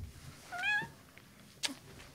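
A cat meows once: a short, wavering meow about half a second in. About a second later comes a brief knock.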